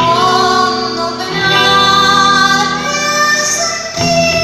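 A woman singing a bolero live with a small band, holding a long note with vibrato through the middle of the passage over guitar accompaniment, heard through the hall's sound system.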